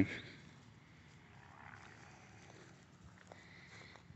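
Faint sniffing of a dog nosing around freshly dug holes in the dirt, a little stronger around the middle.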